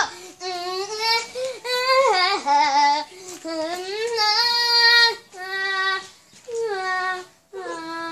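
A young girl's voice singing in long held notes that slide up and down, in several phrases with short breaks between them.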